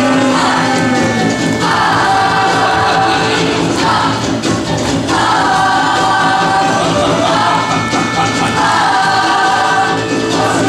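A musical theatre ensemble singing in harmony over instrumental backing, in three long held chords.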